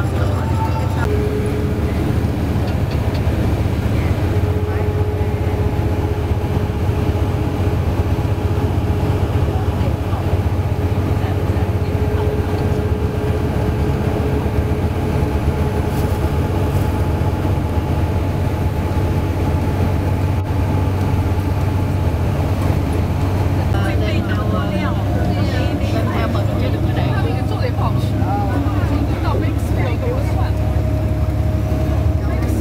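Steady low rumble of a tour coach's engine and tyres at highway speed, heard from inside the passenger cabin, with faint talk among passengers in the last few seconds.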